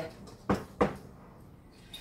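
Two sharp knocks about a third of a second apart: a mixing spoon striking the side of a glass mixing bowl while stirring stiff cookie dough by hand.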